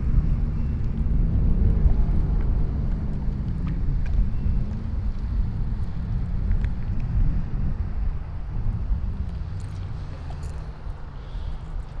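Steady outdoor low rumble that wavers in level and eases off a little near the end, with a few faint ticks.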